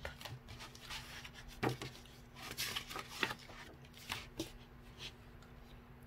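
Paperback picture-book page being turned by hand: soft paper rustling and sliding, with a few light clicks and taps from handling the pages.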